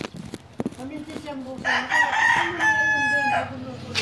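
Rooster crowing once, a loud call of nearly two seconds that ends in a long held note.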